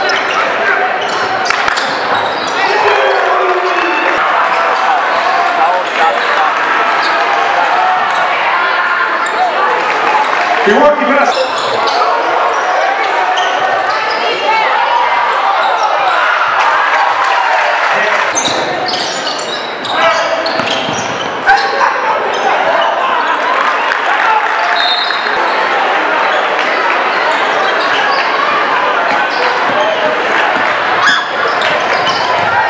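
Live game sound in a high school gym: indistinct crowd and player voices echoing in the hall, with a basketball bouncing on the hardwood floor.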